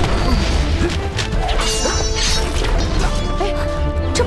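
Fight-scene sound effects, repeated hits, clashes and swishes, over dramatic background music.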